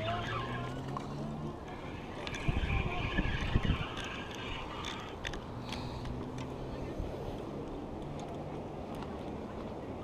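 Wind rumbling on the camera microphone over open water, with faint indistinct voices and a cluster of heavy thumps about two and a half to three and a half seconds in.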